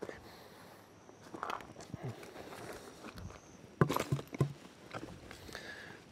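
Footsteps crunching through wet leaf litter and twigs on a forest floor, irregular and light, with a few louder crunches and knocks about four seconds in.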